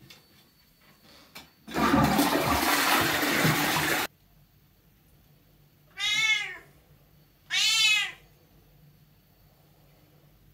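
A toilet flushing loudly for about two seconds, cut off abruptly, followed by a Bengal cat meowing twice, each meow rising and falling in pitch.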